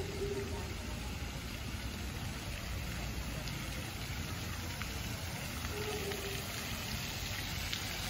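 Pond fountain jets spraying and splashing back onto the water, a steady, even rushing hiss.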